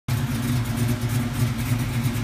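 LS-swapped V8 in a G-body car idling steadily, a low, even exhaust rumble.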